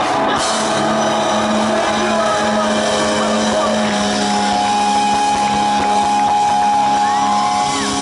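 Loud live rock music: amplified electric guitars holding long, steady, droning notes, with a new higher sustained tone coming in about halfway through, as the song rings out.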